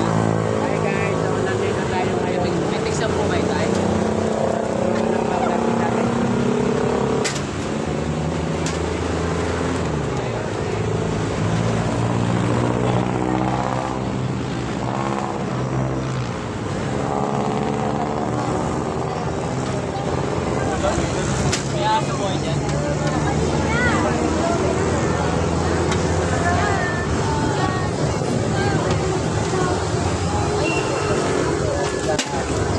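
A small vehicle engine idling close by, its pitch stepping up and down now and then, with people talking over it.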